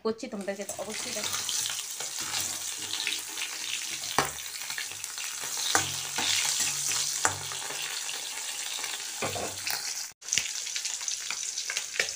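Curry frying in hot oil in a metal kadai, with a steady sizzle. A metal spatula stirs and scrapes against the pan every second or so.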